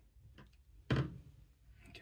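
Screwdriver turning a small bolt through a metal bearing-and-bracket assembly, heard as a faint click about half a second in and a sharper short knock near the one-second mark.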